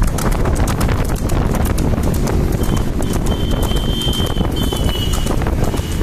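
Water buffalo's hooves striking an asphalt road at a fast run as it pulls a racing cart, a rapid string of clip-clop strikes over a steady low rumble.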